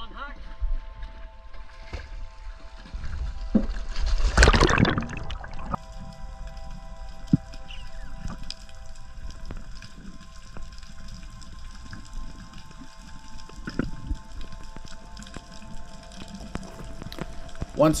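Background music with steady held notes over water sounds, with a loud rush of splashing water about four to five seconds in.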